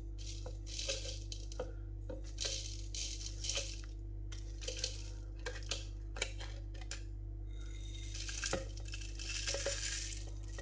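Whole dried spices (seeds, cardamom pods, cinnamon stick and bay leaves) sliding off a plate and rattling into a plastic blender cup, in several short bursts with sharp clicks as the larger pieces drop. A steady low hum runs underneath.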